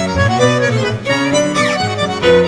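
Tango ensemble playing, led by bandoneon with bowed strings, with a quick falling run near the end.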